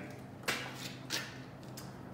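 Handling noises on a wet concrete floor: two soft taps as a small plastic cup is picked up, over a faint steady low hum.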